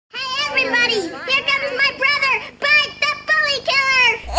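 A high-pitched, baby-like voice singing in short phrases with gliding pitch.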